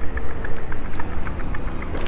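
Wind rumbling on the camera microphone and road noise from riding an electric bike, with light rattling ticks scattered through.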